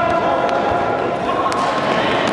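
A futsal ball being kicked and striking the hard indoor court, two sharp knocks about half a second and a second and a half in, under players' drawn-out shouts echoing in a large gym.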